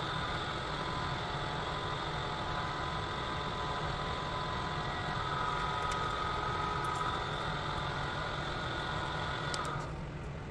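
Drill press running as a spiral tap is power-driven into a steel flat bar, a steady whine with a low hum under it. The whine grows a little louder about halfway through and stops shortly before the end.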